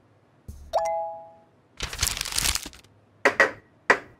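A short chime rings once, as for a correct answer in a guessing game, fading away within about a second. About two seconds in, roughly a second of rustling noise follows, then a couple of short knocks.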